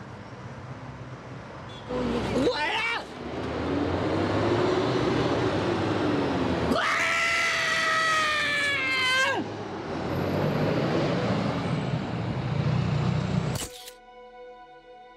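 A woman wailing and crying in distress: a short cry about two seconds in, a long low moan, then a long loud wail that falls in pitch and breaks off about nine seconds in, with more low moaning after it, over steady street traffic noise.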